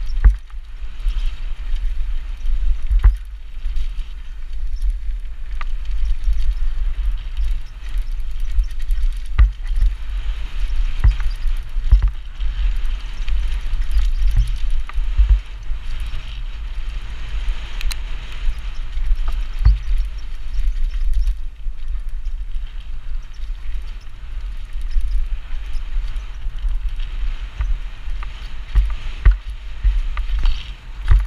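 Mountain bike ridden fast down a dirt woodland trail: a steady heavy rumble of tyres and rushing air, with sharp knocks and rattles from the bike over bumps several times.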